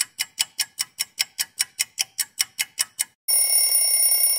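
Clock ticking sound effect, about five ticks a second, then an alarm-clock bell ringing steadily from about three seconds in. It is the timer for the freeze pause while the music is stopped.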